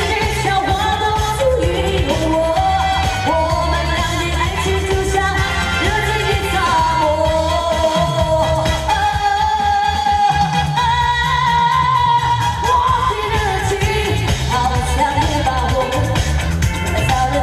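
A woman singing a pop song live into a microphone over amplified backing music with a steady beat.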